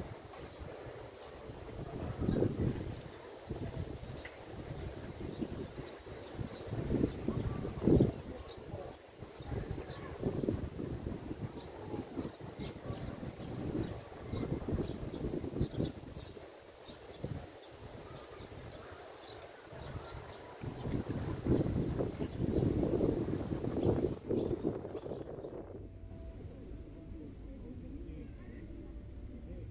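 Wind gusting over the microphone, with faint, quick high chirps from swallows at their mud nests, mostly in the middle of the stretch.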